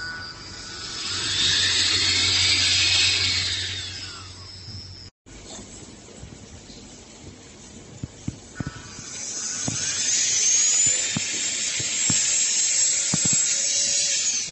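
Trapom Pro cordless handheld vacuum and air duster, its brushless motor running with a high whine: it spins up, runs for about three seconds and winds down. After a break, a few clicks and the motor spins up again and runs steadily to the end.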